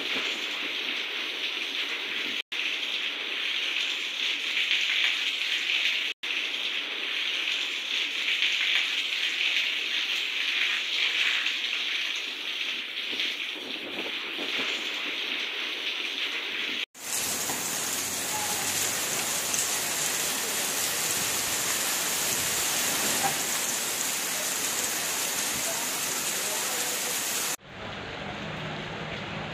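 Heavy rain falling, a steady hiss of rain on roofs and wet ground. It breaks off briefly at three cuts. After the last, about two-thirds through, the hiss turns fuller and deeper.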